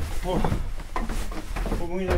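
Men talking over the steady low rumble of a working electric grain mill's machinery.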